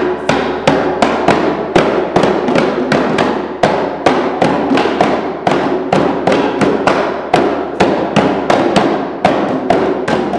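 Djembe drums struck with bare hands in a steady, fast rhythm of sharp slaps and ringing tones.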